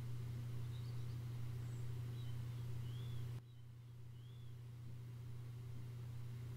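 Quiet, steady low hum from a motorized rotating display turntable, with a few faint, short high chirps scattered through; the hum drops slightly in level a little past halfway.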